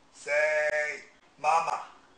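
A person's voice: one long vocal sound held on a single steady pitch for nearly a second, then a second, shorter one about a second and a half in.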